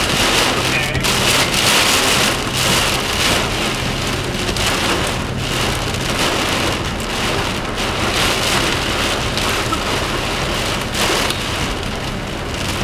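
Torrential rain and strong wind gusts pelting a parked car, heard from inside the cabin, surging and easing in waves. A steady low hum runs underneath through about the first half.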